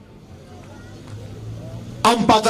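A pause in an outdoor speech: faint background noise with a low steady hum that grows a little louder about halfway through, and a few faint distant voices.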